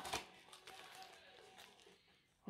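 A short sniff right at the start, as a small cardboard tea box is held to the nose. Then a quiet small room with faint handling sounds from the box.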